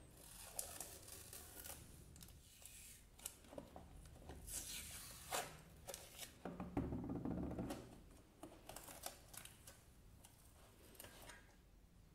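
Clear plastic tape seal peeled from around the rim of a metal cookie tin, with faint crinkling, tearing and small clicks. There is a louder spell of the tin being handled partway through.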